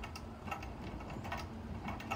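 Wilesco toy steam engine being coaxed into turning over, giving faint, regular mechanical clicks about two to three times a second as it struggles to start on low steam pressure.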